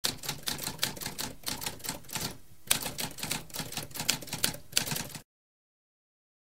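Typewriter typing: a rapid, uneven run of key strikes with a brief pause about two and a half seconds in, stopping abruptly about five seconds in.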